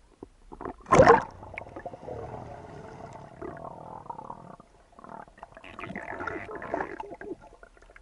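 A person plunging into the sea from a cliff: a loud splash of entry about a second in, then bubbling and gurgling heard underwater.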